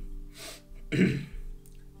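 A man clearing his throat once, sharply, about a second in, over quiet background music.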